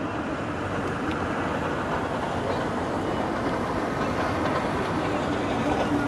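Steady outdoor din of a city square, an even background noise with a voice faintly under it.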